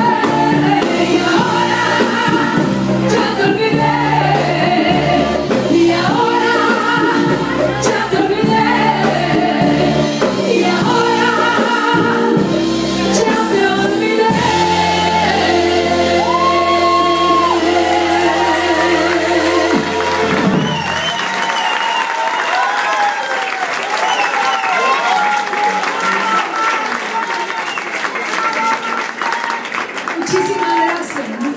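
Live band with a female singer performing a song: the band holds a final chord under a long sustained sung note, then stops about 21 seconds in and the audience applauds and cheers.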